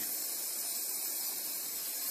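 Spark gap of a homemade Tesla air-coil transmitter firing continuously, heard as a steady hiss.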